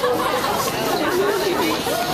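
People chatting, with voices overlapping.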